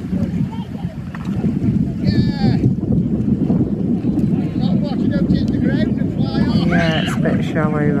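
Wind buffeting the microphone, a dense low rumble throughout, with a voice laughing and calling out from about halfway in.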